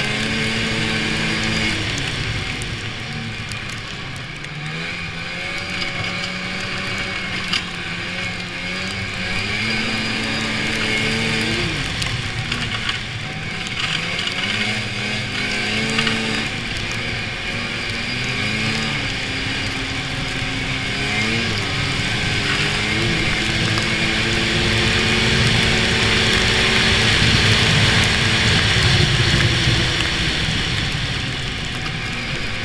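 1993 Polaris Indy 340 snowmobile's two-stroke twin engine running under way, its pitch rising and falling as the throttle is worked, over a steady rushing noise from the moving sled. It gets louder in the last few seconds.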